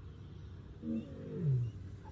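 A lion gives two low calls about a second in. The second is longer and falls in pitch.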